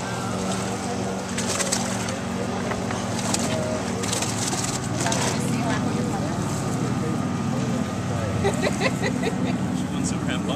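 Outboard boat engine idling with a steady low hum. Over it come short rustles and knocks of a fish bag and a plastic weigh basket being handled, mostly in the first half.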